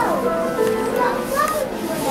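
Background music mixed with the voices of shoppers, children among them; a high voice glides sharply down in pitch at the very start.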